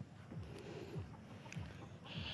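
Faint low rumble and rustle of handling noise from a phone camera being carried and panned, with short soft thumps about three times a second.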